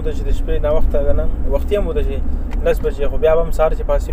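A man talking continuously inside a moving car, over the steady low rumble of the car's road and engine noise in the cabin.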